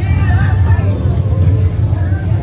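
Low, steady engine rumble of a lowrider car rolling slowly past, with people talking in the background.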